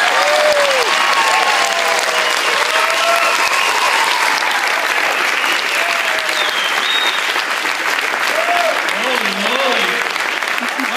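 A congregation applauding, dense steady clapping that tapers slightly, with scattered shouts and whoops from the crowd.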